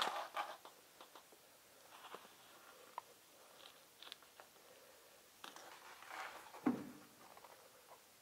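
Faint rustling with scattered light clicks and taps, the sharpest a knock about two-thirds of the way through. This is handling noise from a person moving about and shifting things in a cab.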